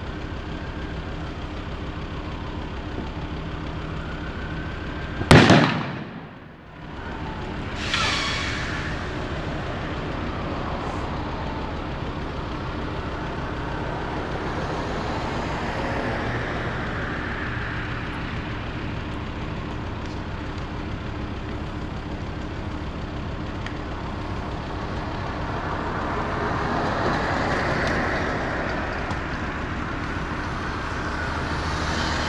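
A car burning out gives off a loud, sharp bang about five seconds in and a smaller pop a few seconds later. Underneath runs the steady hum of an idling engine and passing road traffic.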